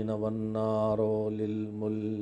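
A man's voice chanting the Arabic opening praises of a sermon in a slow, intoned recitation, held on nearly one low pitch almost throughout.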